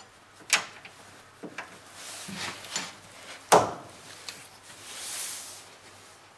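Throttle cable being fed through and fitted into a bare car body shell: a few sharp clicks and knocks of the cable and its plastic fittings against the sheet metal, the loudest about three and a half seconds in, with shuffling and a brief rustle near the end.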